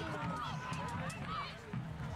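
Many voices shouting and calling out at once, overlapping, from reenactors in a close-quarters mock battle melee.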